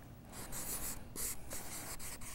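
Marker pen writing on paper flip-chart sheets: a quick series of short, hissy strokes as the letters are drawn.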